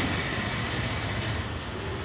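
PDPL Swaraj 12 bhp single-cylinder air-cooled diesel engine running steadily, a loud, even mechanical clatter.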